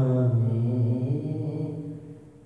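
A man singing solo without accompaniment, holding one long low note that fades near the end.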